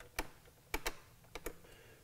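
Light plastic clicks and taps from hands fitting a plastic trim piece over the battery tray and starting its screws by hand. There are about five clicks: one single click, then two quick pairs.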